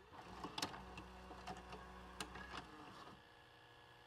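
A faint mechanical whir, like a small motor, with a few sharp clicks scattered through it, cutting off about three seconds in and leaving a faint hiss.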